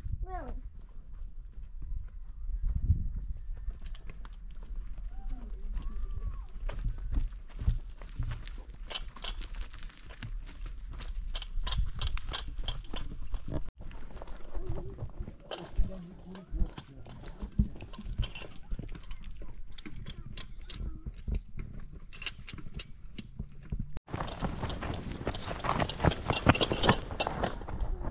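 Footsteps crunching and clattering on loose stones and dry leaves, with short clacks of stone against stone, and voices under them.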